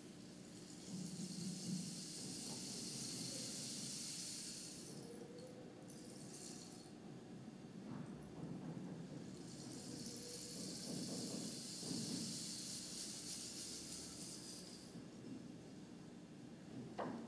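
A rain stick tipped over twice, each tip a long soft hiss of falling grains, the first about four seconds long and the second about five.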